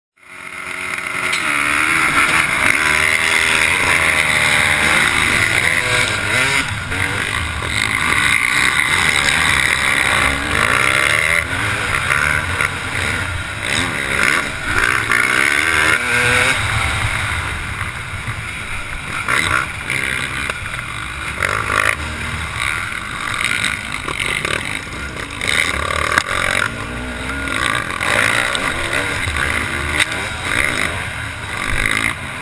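Yamaha YZ250 two-stroke motocross engine revving hard under race load, its pitch repeatedly rising and dropping as it accelerates and shifts, with a steady rush of noise over it. Other dirt bikes run close by.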